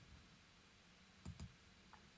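Faint computer mouse clicks, a quick pair about a second and a quarter in, opening a software drop-down menu; otherwise near silence.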